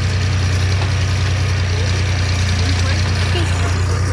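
Tractor engine running steadily, a low even drone, as it pulls the hayride wagon.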